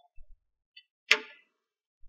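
A single sharp click about a second in, with a couple of faint low bumps before it.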